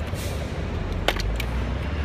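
City street traffic noise: a steady low rumble, with a sharp click about a second in and a few brief high-pitched tones just after it.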